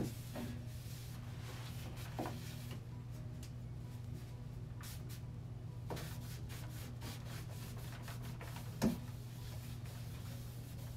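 Hand wiping a wooden bookshelf, with rubbing strokes and a few light knocks as a glass candle jar is handled on the shelf. The loudest knock comes near the end.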